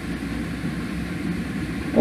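Steady low background rumble with no distinct events, heard in a pause between a man's sentences.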